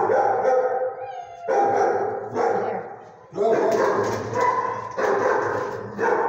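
Dog barking: about five loud barks a second or more apart, each ringing on in the hard-walled kennel.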